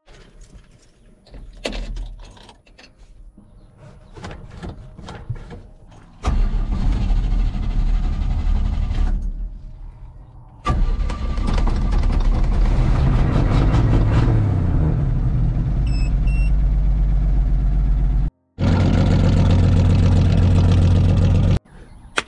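Chevrolet 292 inline-six in a 1971 C10 pickup being started with the ignition key and running, loud and steady. It revs briefly and falls back a few seconds after it catches. The sound breaks off abruptly twice near the end.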